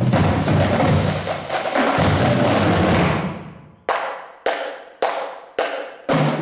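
Marching drumline of snare drums, tenor drums and bass drums playing a cadence together; about three seconds in the playing stops and rings out, then four sharp unison strikes come about half a second apart before the full line comes back in at the very end.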